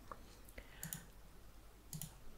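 Near silence: faint room tone with a few soft, scattered clicks.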